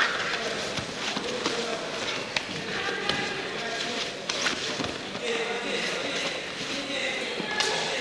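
Wrestlers' feet and bodies knocking and shuffling on a canvas-covered mat, with a few sharp thumps, under voices calling out from around the mat in a large hall.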